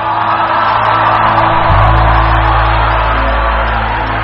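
Church keyboard music with a steady bass, a deeper bass note coming in a little under two seconds in, and a congregation cheering and shouting over it.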